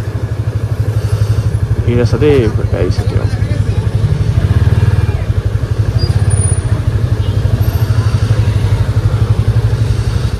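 Motorcycle engine running steadily as the bike rolls along, its exhaust giving a fast, even beat throughout.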